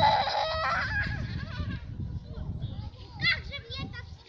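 A young girl's high-pitched shout, held for about a second at the start, then short, rising high squeals about three seconds in.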